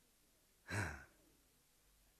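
One short sigh from the narrator about a second in, otherwise near silence.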